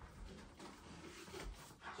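Faint, soft rustling and a few light clicks as a Newfoundland dog picks up a letter and carries it back across a carpeted floor.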